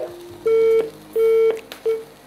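Telephone disconnect (busy) tone on the studio phone line as a viewer's call drops: three short, evenly spaced beeps of one steady pitch.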